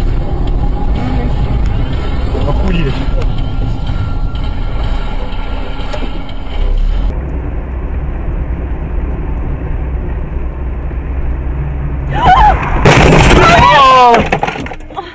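Steady cabin and road rumble inside a moving car. About two seconds from the end comes a sudden loud collision, followed at once by loud, high screaming.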